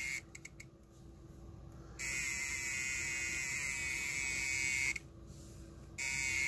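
CC308+ RF bug detector's alarm sounding from its built-in speaker: a hissing buzz with a high whine that cuts out, comes back about two seconds in for about three seconds, then stops again. A few faint clicks come just after it first cuts out. The detector is going off intermittently as it is swept near a phone, though whether it is picking up a real signal is unclear.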